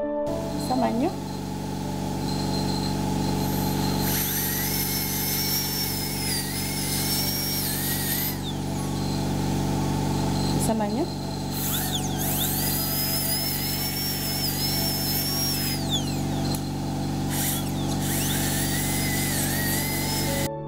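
High-speed dental handpiece whining as its bur cuts into a tooth, in three runs of a few seconds each starting about four seconds in, its pitch wavering under load.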